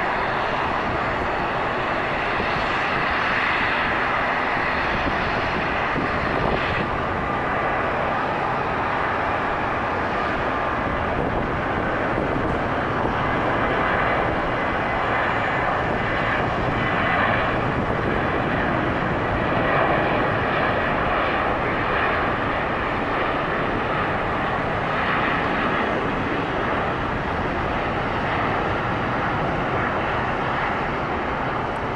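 Boeing 737-700's CFM56-7B turbofan engines at takeoff thrust during the takeoff roll: a steady, loud rush of jet noise, with a thin high whine in the first ten seconds or so.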